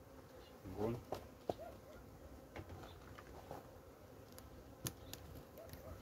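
Honeybees buzzing faintly and steadily from an opened hive, a calm colony that is still wintering. A few short clicks and light knocks come as the hive's inner board is handled.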